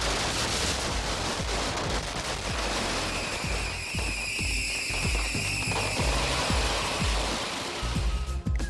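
Strings of firecrackers going off in a dense, continuous crackle over background music with a thudding low beat; a held high tone joins from about three to six seconds in.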